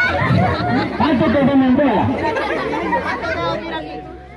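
Overlapping chatter of a group of people, several voices of adults and children talking at once.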